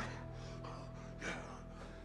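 Quiet film score of low sustained tones, from a movie soundtrack.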